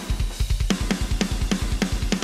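Soloed drum bus of a metal recording playing back: rapid double-kick bass drum under snare cracks and cymbals. It runs through an 1176-style compressor that the snare is hitting hard.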